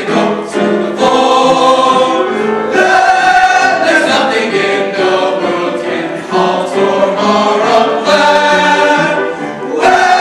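High school men's choir singing in parts, holding full chords that move to new pitches every second or so.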